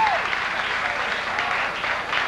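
Audience applauding, with many fast overlapping claps; a held sung note from the end of the song falls away just as the applause begins.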